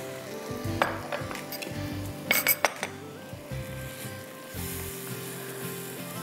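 A spatula stirring a milk and cashew-paste sauce in a non-stick pan on a gas flame, with a light sizzle and a few sharp clinks about a second in and again between two and three seconds in. Soft background music plays throughout.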